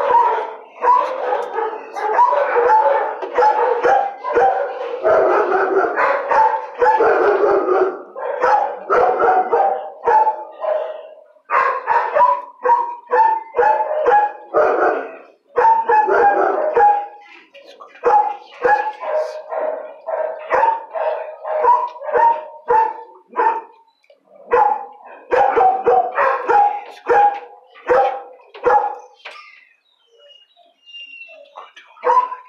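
Dogs in a shelter kennel barking almost nonstop, several barks a second, with a few brief lulls.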